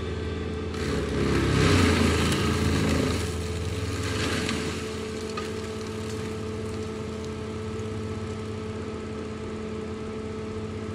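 Compact track loader with a forestry mulcher head, its engine running steadily; about a second in the machine works harder and the sound swells into a louder, rougher stretch for a couple of seconds before settling back to a steady drone.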